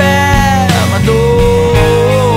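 Folk-rock song played by a band with acoustic guitars, bass and drums, with a man's voice sliding down and then holding a long sung note from about a second in.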